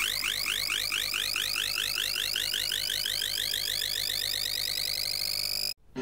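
Computer-generated beeping tones of a selection-sort sonification. Each scan through the unsorted bars is heard as a quick rising glide of beeps, repeating several times a second and coming faster and shorter as fewer bars are left to sort. Near the end the tones cut out briefly, then a new tone begins rising as the array finishes sorted.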